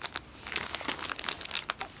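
Clear plastic packaging of cross-stitch kits crinkling as the packs are handled and shifted, a quick run of crackles.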